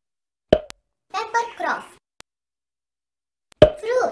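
Two short cartoon 'pop' sound effects, one about half a second in and one near the end, with a child's voice speaking briefly between them.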